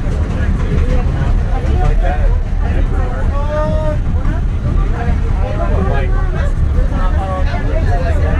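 Steady low rumble of a moving passenger train heard from inside the carriage, with passengers' voices chatting over it.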